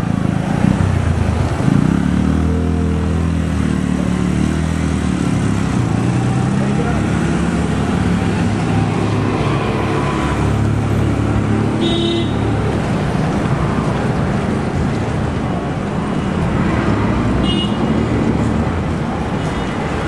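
Street traffic noise: vehicle engines running and passing, with one engine's low hum standing out in the first few seconds before settling into a steady traffic background.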